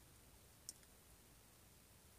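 Near silence, with a single faint, short click about two thirds of a second in.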